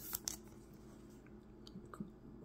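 Faint plastic rustle of a trading card being slid into a clear penny sleeve, with a few soft crinkles in the first half second and a light tick near the end.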